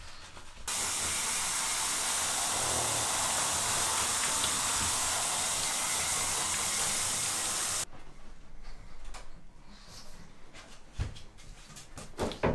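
Handheld shower head spraying water onto a pug in a bathtub: a steady hiss that starts suddenly just under a second in and cuts off about eight seconds in.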